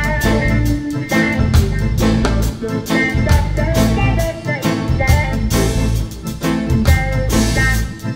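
Live reggae band playing an instrumental passage: electric bass, drum kit, rhythm guitar and a horn section of saxophone and trumpet, with a steady beat.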